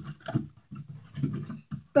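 Rough scratching against a surface in a few irregular strokes, made to demonstrate a grating sound she hates, like nails on a chalkboard.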